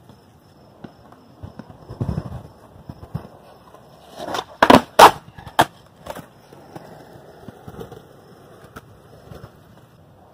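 Skateboard wheels rolling on concrete, with a few pushes and clicks. About halfway through comes a 360 varial finger flip: two loud sharp clacks in quick succession as the board is caught and landed, a couple of smaller knocks after. The wheels roll on quietly after that.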